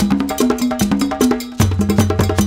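Background music: an African-style drum track of fast, sharp hand-drum and bell-like percussion strokes over pitched low drum tones that step between notes, in a repeating pattern.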